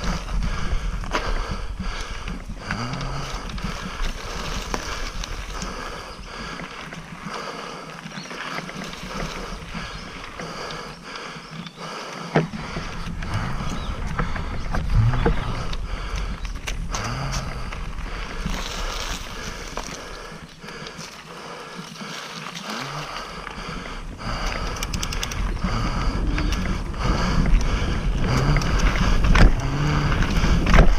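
Mountain bike being ridden along a dirt trail: wind buffeting the camera's microphone, tyres rolling over dirt and leaf litter, and the bike rattling over bumps. The low wind rumble drops away twice for a few seconds.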